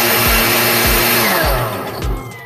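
Countertop blender running at speed, puréeing sautéed vegetables in chicken broth, then winding down with a falling pitch about one and a half seconds in. A steady music beat thumps underneath.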